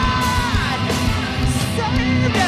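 Live hard rock band playing: guitar and drums with cymbal crashes under a yelled, sung vocal that holds a note and slides down about half a second in.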